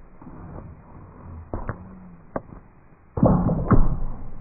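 A few sharp taps during the pole vaulter's run-up. Near the end comes a loud clunk and scrape as the pole is jammed into the planting box at take-off, with a second sharp knock just after.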